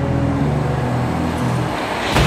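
Electric low-floor tram rolling along, a steady low hum and rumble.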